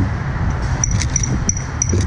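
Steady low outdoor rumble with a quick run of short high-pitched beeps, about three a second, starting about a second in.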